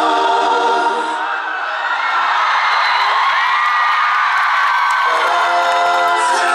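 Live concert music heard from the audience: a man singing over guitar, with many voices from the crowd singing along. In the middle stretch the steady singing gives way to a looser, higher wash of voices before the lead vocal lines return near the end.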